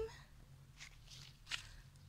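Faint footsteps on garden ground, two soft scuffs just under a second in and again about half a second later, over a low steady rumble of camera handling.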